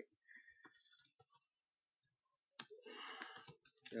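Faint computer keyboard keystrokes, a run of light clicks as code is typed, followed about two and a half seconds in by a roughly one-second burst of soft noise.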